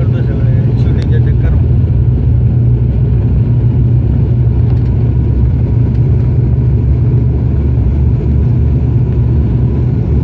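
Turboprop airliner's engines and propellers running at a steady low drone, heard inside the cabin as the aircraft rolls fast along the runway.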